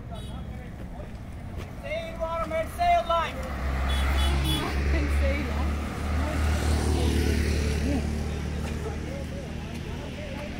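Road traffic: a motor vehicle passing close by, its low rumble swelling about three and a half seconds in and easing off near the end, with people's voices calling out just before it.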